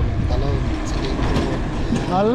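Wind buffeting the microphone and tyre rumble from a mountain bike coasting downhill on a concrete road: a loud, steady low rumble.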